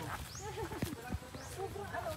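Indistinct voices of people talking on a forest trail, with a few footfalls on the dirt path.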